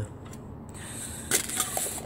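Handling noise on a glass-topped table as a tin of pellets is reached for: one short knock a little past halfway, then a few faint clicks, over a steady low hiss.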